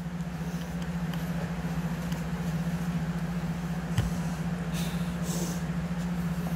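A steady low machine hum, unchanging in pitch, with a single brief knock about four seconds in.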